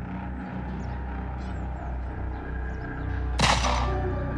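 A single gunshot cracks about three and a half seconds in, with a short ringing tail. Before it there is a low, steady drone.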